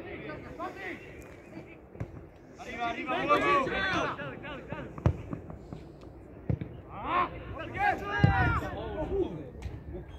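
Voices shouting across a football pitch during play, in two spells, with a few sharp thuds of a football being kicked in between.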